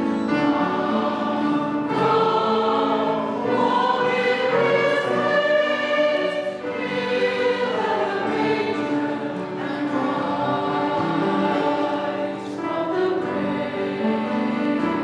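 Mixed church choir singing a hymn in slow phrases of held notes, accompanied by guitars and piano.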